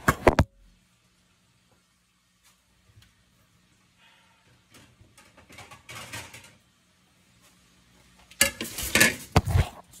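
Loud knocks as a phone is handled and set down, then a quiet stretch of faint clicks and rustles over a low steady hum, then a second burst of loud knocks and clatter near the end as the phone is picked up again.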